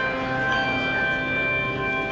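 Handbell choir ringing a chord of several handbells whose tones ring on and overlap, with a new high bell note coming in partway through.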